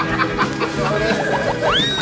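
Background music with steady held notes, and a rising whistle sound effect near the end.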